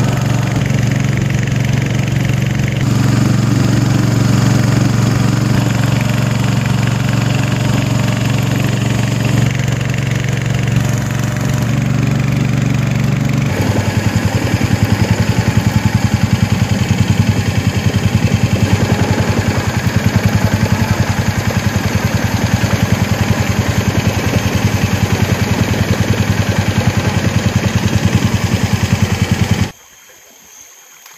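A small longboat's motor running steadily under way, with the hull moving through the water. About halfway through its note drops slightly and becomes more throbbing.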